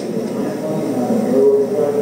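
Muffled, distant voice of an audience member asking a question, heard faintly from off the microphone.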